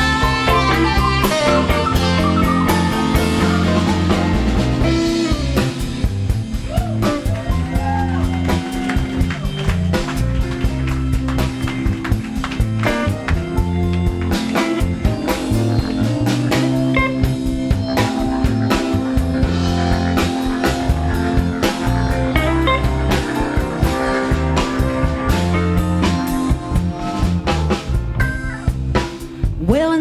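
Live band playing an instrumental break in a blues-rock groove: drum kit, bass, electric guitar and organ, with no vocals.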